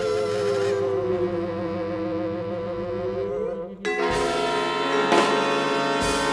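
Free-improvised avant-garde ensemble music from winds, cello and percussion: a held tone slides slowly down and back up over sustained notes. Just before four seconds the texture breaks off and a denser block of held tones takes over, with a short percussive hit about five seconds in.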